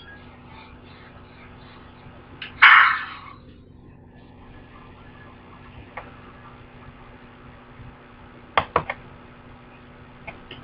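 Horror movie trailer audio playing quietly over speakers in a small room: a sudden loud noisy burst about three seconds in that dies away within half a second, and a quick run of three sharp hits near the end.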